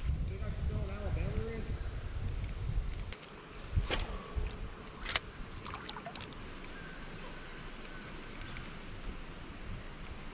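Spinning reel being cranked to retrieve a lure, with two sharp clicks about a second apart near the middle and a low rumble over the first few seconds.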